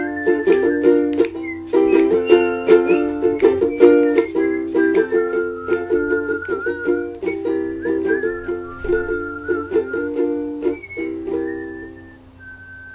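Ukulele strummed in a steady rhythm while a melody is whistled over it. The strumming and whistling thin out and fade near the end.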